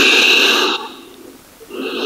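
A woman breathing audibly during a yoga pose: one loud, hissing breath lasting under a second, then a softer breath near the end.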